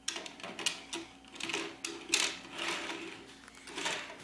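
Die-cast toy cars being pushed along a plastic track and set down on a wooden tabletop: a run of small clicks, knocks and rattling wheels.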